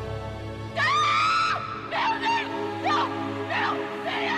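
Dramatic score with sustained notes, over which a high, anguished wailing cry rises about a second in and holds, followed by several short sobbing cries of grief.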